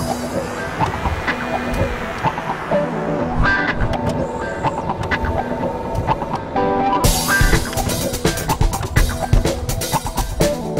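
Background music with a drum-kit beat. The track gets fuller and brighter about seven seconds in.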